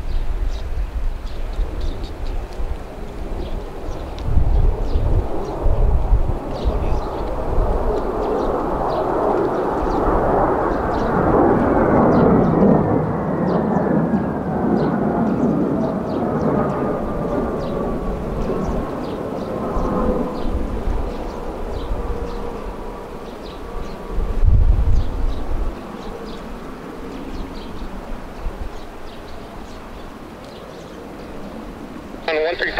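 Jet noise from a pair of AV-8B Harriers' Rolls-Royce Pegasus turbofans on approach. It swells to a loud roar about a third of the way in, with a whine that falls slowly in pitch as they pass, then fades. Wind buffets the microphone now and then with low thumps.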